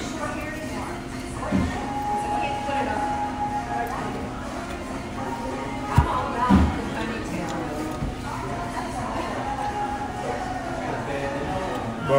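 Busy restaurant ambience: diners talking and music playing over the house speakers, with a sharp knock about halfway through.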